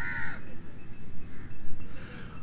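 A crow caws once, a short call right at the start, over a steady low rumble.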